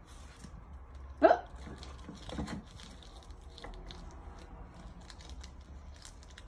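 Soft crinkling and scattered small clicks of paper tape being pulled up and handled, with one short, loud, rising vocal sound from a toddler about a second in.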